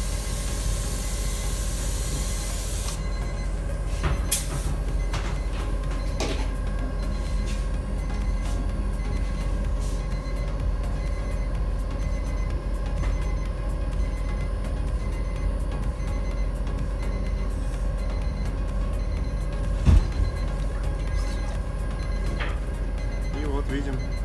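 Compressed-air spray gun hissing for about the first three seconds as it finishes spraying activator onto the hydrographic print film. Then a steady workshop hum, with a few light knocks and a louder thump late on.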